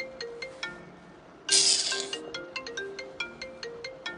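A phone ringtone playing a quick melody of short, bright notes, with a brief burst of hiss about a second and a half in.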